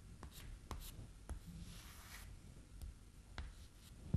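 Chalk writing on a chalkboard: faint scratchy strokes broken by small sharp taps as the chalk touches down.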